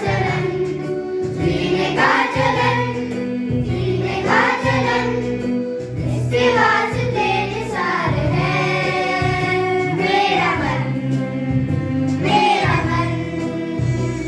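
A children's choir singing a Hindi patriotic song together with a man's voice, accompanied by a Yamaha electronic keyboard.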